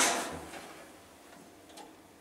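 Faint room tone inside a small stainless-steel lift car, with the echo of the last words dying away at the start and one faint click near the end.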